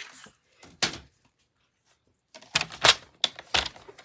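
Sharp clicks and knocks of a paper trimmer and cardstock being handled as a sheet of designer paper is set into the trimmer for a cut: one click, then a quick run of about five sharp clicks near the end.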